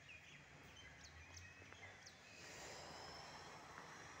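Faint outdoor ambience with a few thin, distant bird chirps, then a faint steady high hiss from about halfway.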